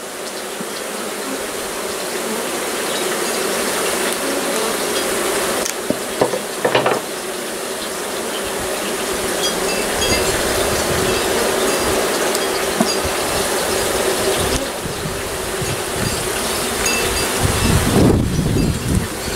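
Honey bee colony buzzing loudly and steadily around its opened nest, growing louder through the second half as the bees get agitated. A couple of brief knocks about six and seven seconds in.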